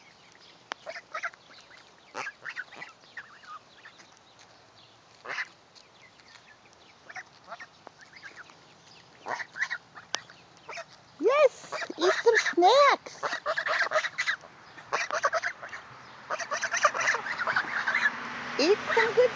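Several domestic geese calling: a few faint, scattered calls at first, then loud, repeated honking from several birds at once, starting about eleven seconds in, each call rising and falling in pitch.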